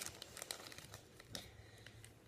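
Faint crinkling and rustling of plastic candy-kit packaging being handled, with a few small clicks.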